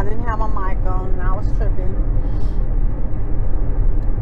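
Steady low rumble of road and engine noise inside a moving car's cabin, heard plainly once the voice stops about a second and a half in.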